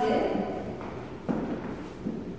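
Heeled dance shoes stepping on a hardwood floor: a sharp tap just past the middle and a lighter one near the end.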